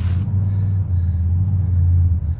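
Steady low rumble of an idling engine.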